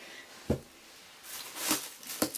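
Paperback books being handled: a soft thump about half a second in as one is set down, then a brief rustle and a light knock near the end as another is taken up.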